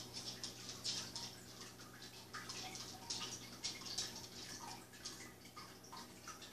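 Faint, irregular soft taps and patters of rain dripping, one or two a second, over a low steady hum from inside a room.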